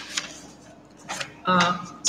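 A few short scrapes and taps of a paper question sheet being handled. About one and a half seconds in, a man's hesitant 'uh' comes in, louder than the handling.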